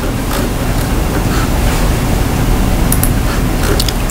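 Steady low rumble of background noise, with a few light clicks about a third of a second in, around three seconds in and near the end.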